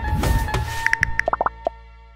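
Advert jingle ending: the backing music stops about half a second in and gives way to a quick run of short, bubbly plopping notes as a sound logo. A held note then fades away.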